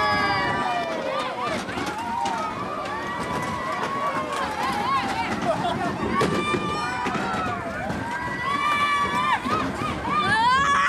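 Many riders' voices, mostly children's, shrieking and calling out together on a spinning fairground ride, with rising squeals now and then over a steady noisy rumble.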